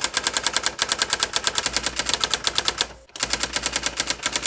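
Typewriter sound effect: a fast, even run of key clicks, about ten a second, as text is typed onto the screen, with a brief pause just after three seconds in.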